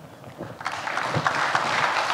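Audience applauding, starting about half a second in and quickly building to a steady level.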